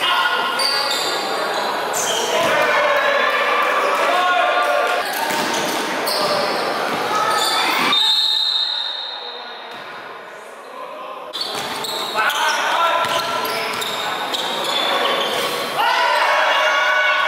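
A basketball being dribbled and bounced on a hardwood gym court during a game, with players' voices calling out, echoing in a large hall. There is a quieter stretch just past the middle.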